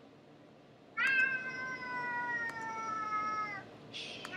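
A domestic cat giving one long, drawn-out meow that starts about a second in and slides slightly down in pitch before stopping.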